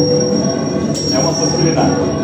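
Laptop-orchestra electronic improvisation: a thin, steady high tone held over a dense, layered drone, with a sharp click about a second in.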